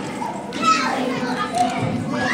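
Children's voices and chatter, several voices overlapping, as children play and talk in a room.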